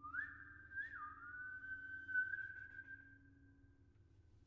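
A pianist whistling one held note that slides up at the start, dips sharply about a second in, then climbs slowly and holds before fading near the end.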